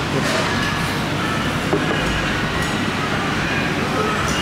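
Steady restaurant room noise: a continuous low rumble with faint voices in the background.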